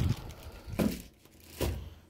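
Rustling of plastic packaging with two short knocks, about a second in and near the end, as bottles of sauce and oil are handled and set down.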